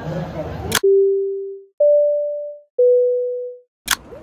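Three clear electronic chime notes edited in over silence, each struck and fading away over about a second: a low note, then a higher one, then one in between. Street noise with voices is cut off abruptly just before the first note and returns with a click near the end.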